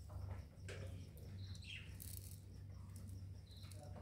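Steady low hum of an aquarium air pump, with a few faint short bird chirps over it, one of them falling in pitch near the middle.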